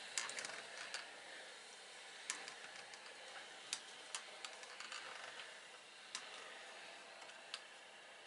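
Steam iron being pushed over quilt batting: a faint hiss with a few scattered light clicks and taps as it slides and is set down.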